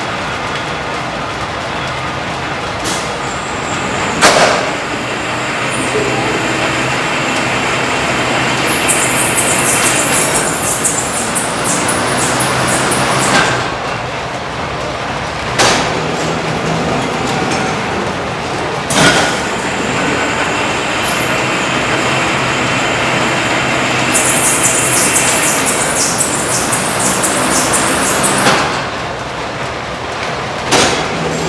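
Cotton spinning mule running, its spindle carriage drawing out and running back in about four times a minute. A high whirr builds twice as the spindles speed up to put in twist, and sharp knocks come at the turns of the cycle.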